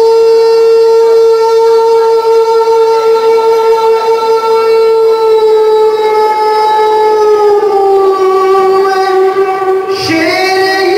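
A man singing one long held note through a microphone in a devotional song, holding the pitch nearly level and then stepping it slightly lower near the end.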